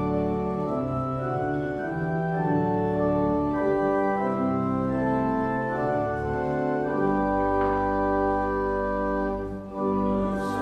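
Church organ playing the introduction to a hymn in sustained, slowly changing chords, with a brief break just before the end as the singing is about to begin.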